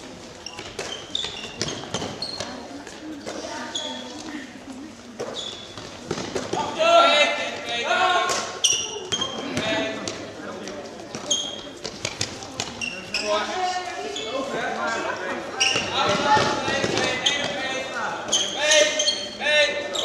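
Korfball play in a large sports hall: players' voices calling in the echoing hall, with the ball bouncing on the floor and short high squeaks scattered throughout.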